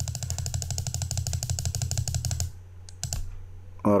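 Computer mouse clicked rapidly and repeatedly, a fast even run of clicks for about two and a half seconds, then a couple of single clicks.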